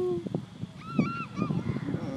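A gull calling: three short, arched calls in quick succession about a second in.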